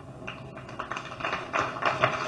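Low background noise of a crowded hall during a pause in the speech, with a few faint, irregular knocks.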